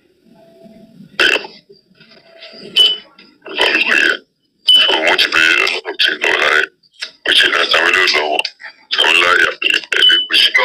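Speech played back from a voice-note recording: faint and broken at first, then spoken phrases from about three and a half seconds in.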